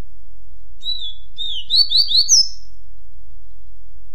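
Double-collared seedeater (coleiro) singing one short phrase of the 'tui-tuipia' song type, starting about a second in. It is a string of slurred whistled notes: two falling ones, three quick rising ones, then a higher closing note. A steady low hum runs underneath.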